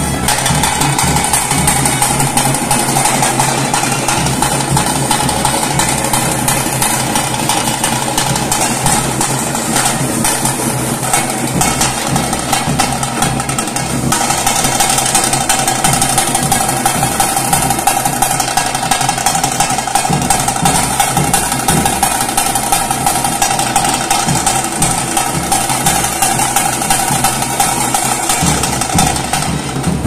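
Temple procession band playing: barrel drums and stick-beaten frame drums (tasse) keep up a fast, steady beat under a held, reedy wind-instrument note that shifts pitch about halfway through.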